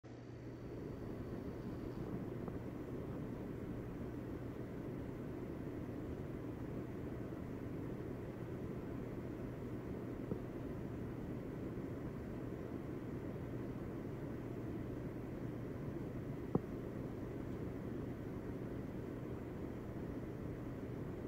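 Steady white noise, low and rushing, with a faint steady hum beneath it. Two soft clicks break it, one about halfway through and one near the end.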